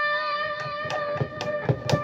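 A single electric guitar note rings on, held steady through the Zoom G2.1U multi-effects pedal's delay patch for solos. A few light clicks sound over it.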